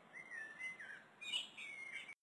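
Faint, high chirping calls that waver and glide up and down, in two short bouts, the second a little higher; the sound stops abruptly at the end.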